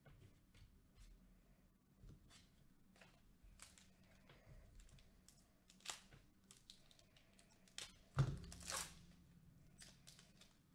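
Faint handling of trading cards and a foil-wrapped card pack: a few light clicks and rustles, then the pack wrapper crinkling as it is torn open, loudest about eight to nine seconds in.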